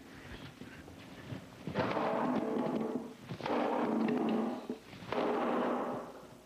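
A sledgehammer striking a carbon-fiber composite car body part three times, about a second and a half apart. Each blow rings on for about a second. The part holds up with only tiny scuffs.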